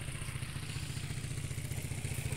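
Motorcycle engine of a cargo tricycle running at low speed with a steady low putter.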